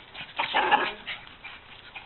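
A small dog barks once, loudly, about half a second in, while the dogs chase each other in play.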